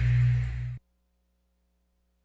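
The final held low chord of a TV programme bumper jingle, cut off abruptly under a second in, leaving near silence with a faint low hum.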